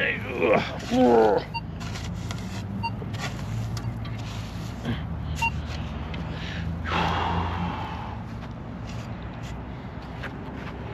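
A shovel scraping and pushing loose sandy dirt back into a dug hole, then footsteps along a sandy trail, over a steady low hum. A short voice-like sound comes in the first second.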